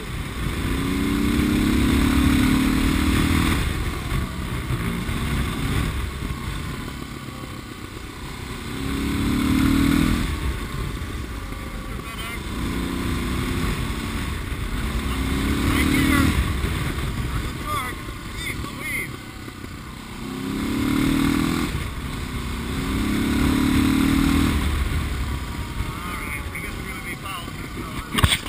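Suzuki DR650 single-cylinder engine, bored out with a Procycle 790 kit and cam, pulling in high gear while the throttle is rolled on and off about six times, so the engine note swells and falls back each time. The engine is freshly built, and the throttle is being worked to seat the new rings.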